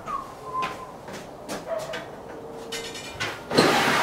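Short squeaks and light footsteps on a concrete garage floor, then near the end a loud scrape as a plastic storage tote is dragged off a wooden shelf.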